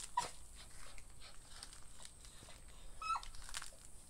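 A dog gives a short, high whine that falls in pitch about three seconds in, with a smaller sound just at the start, over faint rustling.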